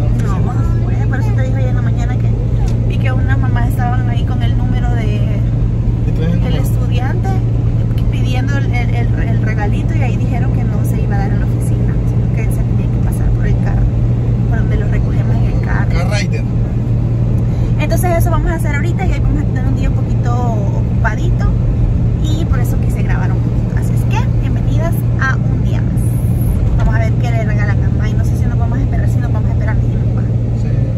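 Steady low drone of a car's engine and road noise heard from inside the cabin while driving, with voices talking over it at times.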